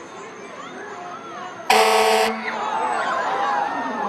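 A fire engine's horn gives one short blast, about half a second long, near the middle, over crowd chatter and children's voices.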